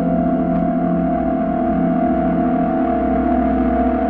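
Eerie ambient background music: a sustained drone of steady held tones over a constant low rumble, with no beat.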